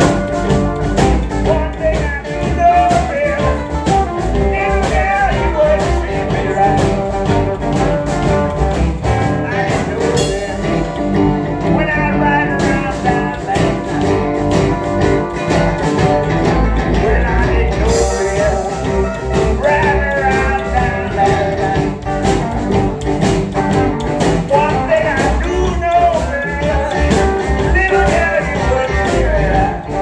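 A blues band playing live at full volume: hollow-body electric guitar, upright bass and drum kit with a steady beat.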